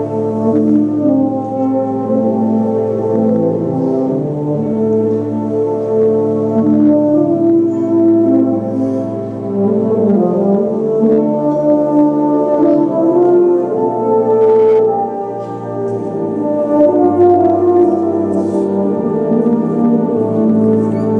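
Brass band playing sustained, slowly changing chords.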